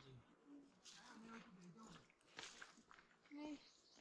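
Faint voices of people talking, with scattered scuffs of footsteps on a paved path.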